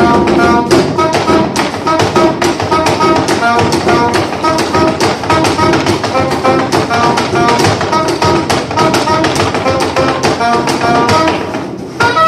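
Live acoustic folk ensemble playing an up-tempo instrumental: a frame drum and a strummed banjo keep a fast, even rhythm under a melody from violin and soprano saxophone. The playing drops briefly in loudness just before the end.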